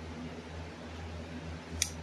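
Steady low room hum with one short, sharp click near the end, from the plastic-framed pin-art toy being handled and tilted.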